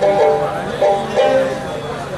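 Bhawaiya folk instrumental passage: a dotara plucks a quick repeated melodic figure against a held bamboo flute line.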